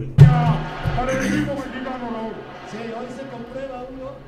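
A single loud cough just after the start, followed by melodic background music.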